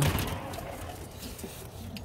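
A back door being opened, a sudden noisy rush as it opens that fades into a steady outdoor background.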